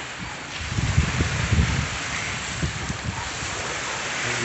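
Wind buffeting the microphone: uneven low rumbling gusts over a steady hiss, strongest about a second in.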